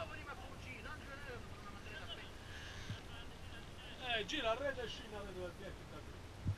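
Faint, unintelligible men's voices talking at a distance, growing briefly louder about four seconds in.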